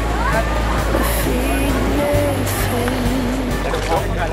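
Background music: held bass notes that change about halfway through, under a sustained melody line.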